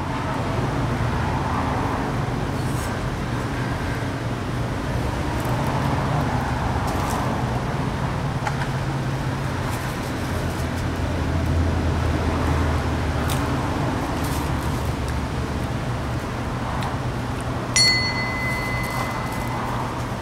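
Steady outdoor road-traffic and engine hum with a continuous low rumble. Near the end, a steady high-pitched electronic beep sounds for about two seconds.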